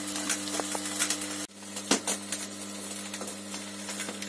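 Electric drive motor and worm gearbox of a coal boiler's screw feeder running with a steady hum, with scattered light clicks and ticks. The auger's broken flight has just been rewelded.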